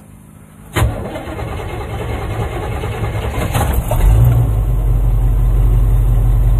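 An old motorhome's carbureted gasoline engine, fitted with a Chinese copy of an Edelbrock carburetor, starting up on choke about a second in. It then runs steadily at fast idle, getting louder and deeper from about four seconds in.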